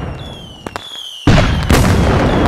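Fireworks sound effect: an explosion dies away, then come a couple of sharp cracks and a brief lull. A sudden loud boom follows about a second and a quarter in, with another shortly after, and thin falling whistles over them.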